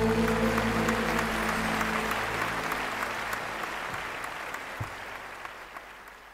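Audience applauding at the end of a live song, with the band's last held chord dying away at the start. The applause fades out steadily.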